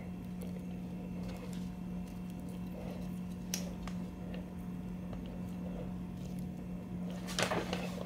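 Faint, soft clicks of small steel needle bearings being handled and pressed by hand into the greased bore of a Muncie countergear, over a steady low hum.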